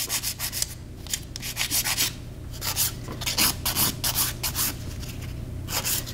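A 150-grit hand nail file rasping back and forth across a gel nail in quick strokes, with two short pauses, blending in a gel fill.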